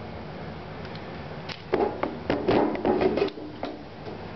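Handling noise: a quick cluster of light knocks and clatters starting a little under two seconds in and lasting over a second, over a steady low room hum.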